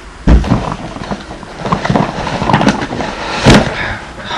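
A cardboard box being shifted and handled: a heavy thump about a third of a second in, then scraping and rustling of cardboard, and another sharp knock near the end.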